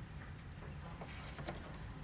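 HP Smart Tank 515 inkjet printer's mechanism working faintly over a low hum, with a few light clicks and a brief whirr in the second half.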